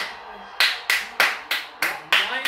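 A person clapping hands: five sharp, evenly spaced claps, about three a second.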